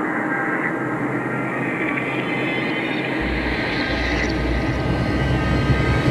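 Jet airliner in flight heard from inside the cabin: a steady rushing of engine and air noise, with a deeper rumble coming in about halfway through.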